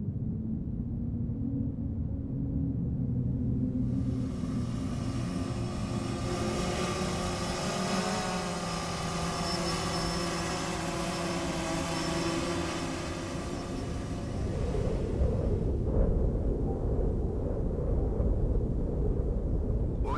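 Low steady rumble; from about four seconds in, the whirring whine of a quadcopter drone's rotors rises in, wavers slightly in pitch, and fades out at about fourteen seconds, after which the low rumble grows heavier.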